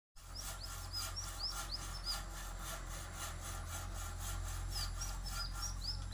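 A bird calling in quick runs of short, high, arching chirps, two bouts a few seconds apart, over a steady low hum.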